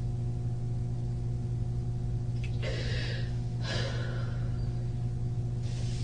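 A distressed woman breathing in two audible, hissy breaths about a second apart, heard over the steady electrical hum of the recording system.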